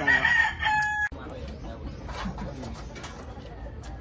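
A rooster crowing. The crow is cut off suddenly about a second in, and only quieter background sound follows.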